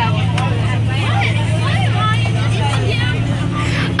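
Steady low drone of a bus engine heard from inside the passenger cabin, under the chatter of several children's voices.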